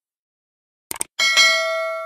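A quick double click about a second in, then a bright bell ding that rings on and slowly fades: the click-and-notification-bell sound effect of a subscribe-button animation.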